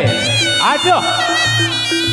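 Live Reog accompaniment led by a slompret, the Javanese double-reed shawm, playing a high, nasal, wavering melody with sliding pitch bends over a steady low tone from the rest of the ensemble.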